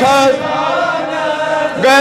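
A man chanting a Kashmiri naat (devotional poem in praise of the Prophet) into a microphone, holding one long sung note with a new phrase starting near the end.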